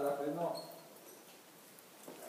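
A man's voice trailing off in the first half second, then near silence: faint room tone in an enclosed rock space.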